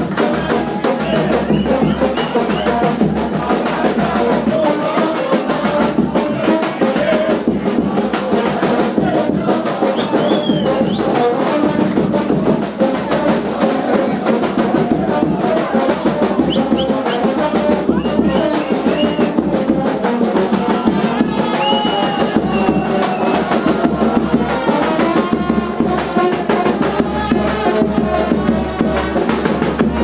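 Live brass band playing loud, continuous dance music, with trumpet and tuba over a bass drum's beat.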